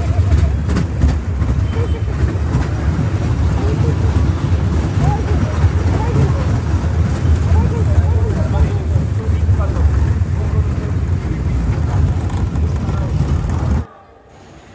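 Dragon-train kiddie roller coaster in motion: a steady, heavy low rumble of the ride car and wind buffeting the phone's microphone, with faint rider voices over it. It cuts off abruptly just before the end.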